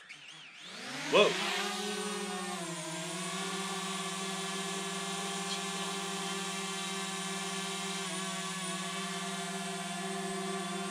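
DJI Mavic Mini's four propeller motors spinning up with a rising whine as the drone lifts off. It then settles into a steady buzz of several tones while it hovers.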